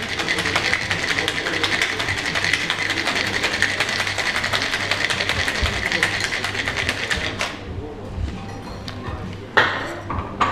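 Ice rattling fast and hard inside a metal cocktail shaker as it is shaken, stopping suddenly about seven seconds in. A single sharp knock comes near the end.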